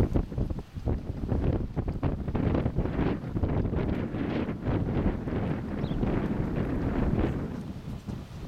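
Wind blowing across the camera microphone, loud and gusting, covering other sounds.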